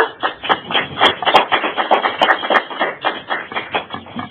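Small audience applauding, a handful of people clapping in a quick, irregular patter that thins out near the end.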